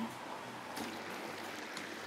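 Diced potatoes sizzling in the hot oil of a deep fryer, a steady hiss: they are being par-fried (half-fried) rather than fully fried.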